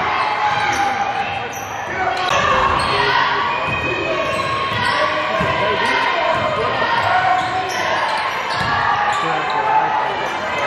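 Basketball being dribbled on a hardwood gym floor, the bounces ringing in a large gym under the indistinct voices of players and spectators.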